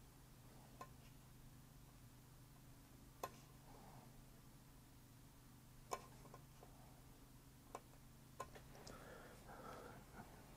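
Near silence: low steady room hum with five faint, sharp clicks spread through it and a faint rustle near the end.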